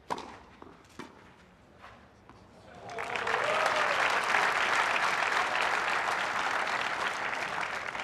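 Tennis ball struck by racquets, sharp single pops at the serve and twice more in the first two seconds, then crowd applause rising about three seconds in and holding steady.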